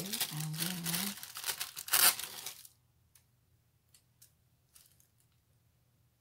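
A thin translucent sticker sheet crinkling and rustling as it is handled, with a sharper crackle about two seconds in. The rustling stops about three seconds in, leaving only a few faint taps.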